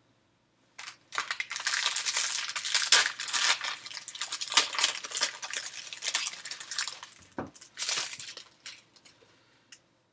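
Foil wrapper of a Topps baseball card pack crinkling and tearing as it is ripped open by hand. It starts about a second in and dies away near the end.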